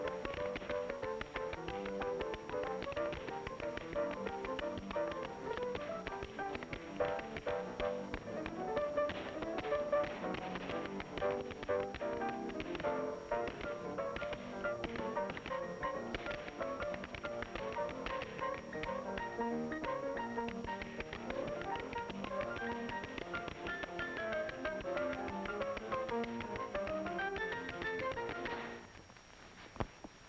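Two dancers tap dancing in time to an upbeat dance-band tune, quick tap-shoe clicks over the music. Music and taps stop together about a second before the end, followed by one last click.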